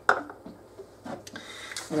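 A short knock at the start, then faint light clatter as kitchen containers are handled beside a stand mixer.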